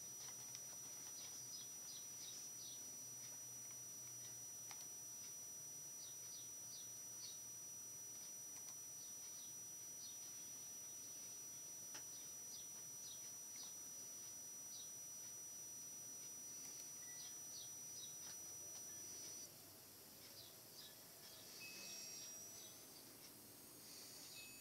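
Near silence: faint room tone with a steady high-pitched whine that stops about three-quarters of the way through, and scattered faint short chirps.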